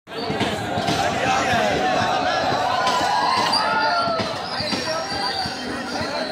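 Passenger train coach rolling slowly past on the track, a dense run of knocks and clatter, mixed with a crowd of men's voices calling out close by.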